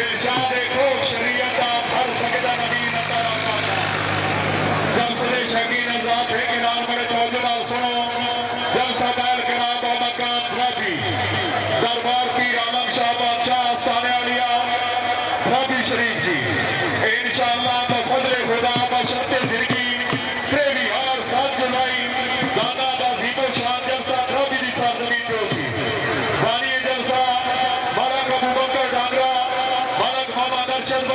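A man's voice amplified through public-address loudspeakers, speaking to a crowd, with steady held tones running beneath it.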